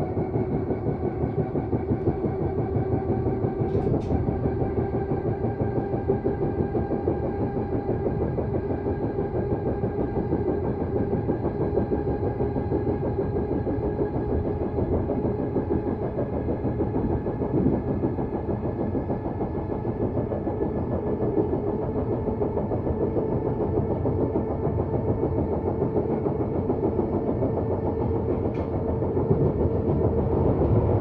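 Bakerloo line 1972 stock train running at speed, heard inside the passenger car: steady rolling noise of wheels on rail with the whine of its traction motors, the pitch of the whine rising slowly. Two brief clicks, about four seconds in and near the end.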